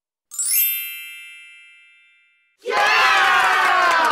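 A bright chime with a quick rising sparkle rings out and fades away over about two seconds. Near the end a crowd of voices suddenly breaks into loud shouting and cheering.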